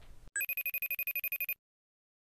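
Telephone ringtone: one burst of rapid electronic trilling, a fast warble lasting just over a second, that cuts off abruptly.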